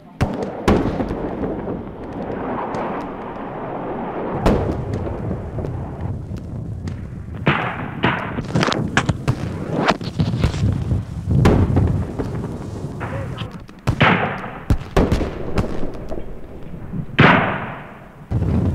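Battlefield gunfire and explosions: irregular sharp shots and heavier blasts over a constant rumble, the loudest blast near the end.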